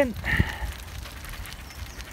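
1970s Pashley tandem bicycle rolling slowly, its tyres running over gritty tarmac strewn with leaves and twigs, with a low wind rumble on the microphone. A single knock comes about half a second in.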